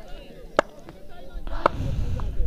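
Two sharp knocks about a second apart, the first the louder, over faint background voices.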